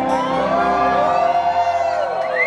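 Live rock band music heard from within the audience, its sustained melody notes gliding slowly up and down in pitch, with some crowd noise underneath.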